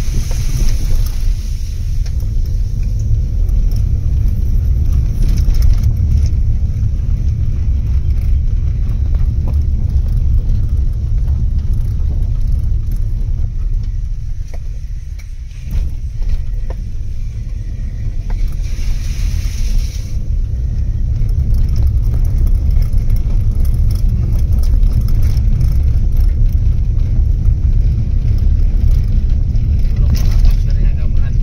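Car cabin noise while driving slowly over a rough, wet forest road: a steady low rumble of tyres and engine, easing for a moment about halfway through.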